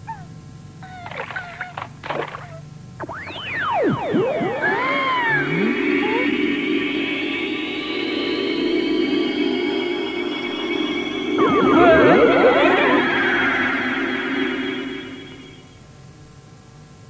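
Cartoon magic sound effect: after a couple of short high kitten mews, swooping whistle-like glides give way to a shimmering sustained chord that slowly rises, with a louder flurry of glides about twelve seconds in, fading out just before the end.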